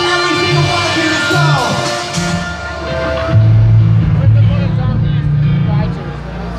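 Power metal band playing live, heard loud through a phone microphone in the crowd. A falling pitch slide comes about a second and a half in. From a little past halfway, the sound loses its top and is dominated by heavy held low notes.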